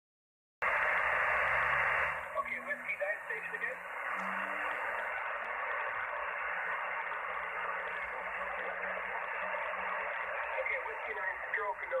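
Shortwave receiver in lower-sideband mode giving out band noise: a steady hiss squeezed into the narrow voice passband, loudest for the first second or so, with weak garbled sideband voices under it. A voice comes through clearly just at the end.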